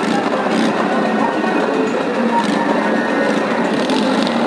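Loud, steady fairground din: a blend of voices, music and engine noise with no single sound standing out.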